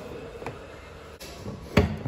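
A plastic fuel cap is handled and pushed back into a car's filler neck with faint clicks, then the fuel filler flap is pushed shut with one sharp click near the end.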